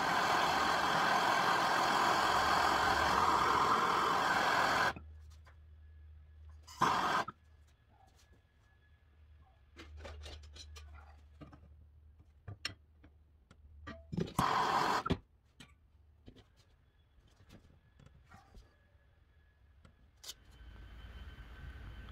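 Handheld gas torch burning with a steady hiss while it heats a bent steel steering shaft clamped in a vise, to soften it for straightening. The hiss cuts off abruptly about five seconds in; after that come two short bursts of the flame and a few faint knocks.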